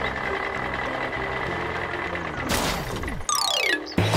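Cartoon sound effects for a toy combine harvester: a steady engine hum, then a loud whoosh about two and a half seconds in, and a falling-pitch sound effect near the end as the harvester jams in a narrow tunnel.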